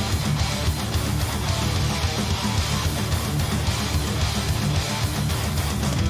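Live heavy metal: distorted electric guitars playing a fast, chugging riff over rapid drums.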